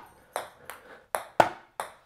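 Ping-pong ball bouncing on a hardwood floor and being hit back and forth with paddles in a rally: about five sharp, separate taps, the loudest about one and a half seconds in.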